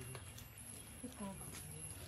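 Many cats eating wet food from plastic trays, with faint scattered clicks of chewing and licking. A brief, falling voice sound comes about a second in.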